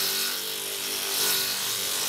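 Takyo TK 15 forage chopper running, its 1.5 kW single-phase electric motor spinning the two-edged forged-steel blade as green leafy stalks are fed in and chopped. The chopping makes a steady, hissing grind over a faint motor hum.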